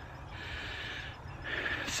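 A man breathing audibly between words while he rests after running: two breaths, one lasting about a second and a shorter one just before he speaks again.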